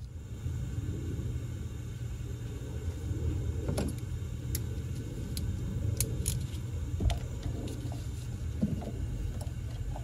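A steady low hum with a few light, sharp metallic clicks and taps from hand work on the engine's valvetrain, spaced irregularly, the sharpest about seven seconds in.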